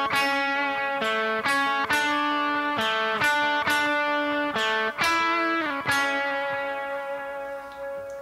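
Electric guitar playing the opening phrase of a solo as single picked notes, about a dozen of them, each left to ring on into the next.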